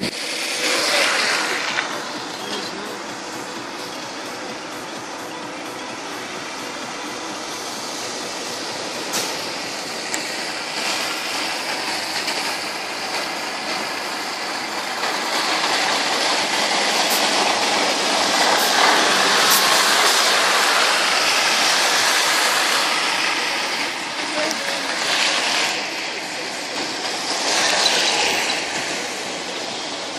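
Road traffic: the steady hiss of vehicles passing on a wet, slushy road, swelling louder in the middle, with indistinct voices.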